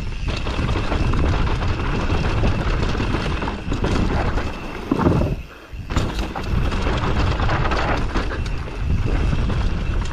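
Mondraker Summum 2021 downhill mountain bike ridden fast down a dry dirt trail, its tyres rolling over dirt and stones with steady rattling noise from the bike and wind on the microphone. The noise swells about five seconds in, then drops away for about half a second before carrying on.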